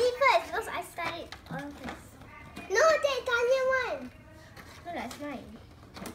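Children's voices: short exclamations and talk, with one drawn-out vocal sound lasting about a second, about three seconds in.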